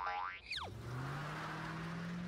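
Cartoon getaway sound effect: a short rising sweep, then a quick falling whistle about half a second in. After it comes a steady low hum with a faint hiss.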